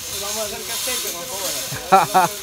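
Faint voices talking over a steady high-pitched hiss, with a closer man's voice starting near the end.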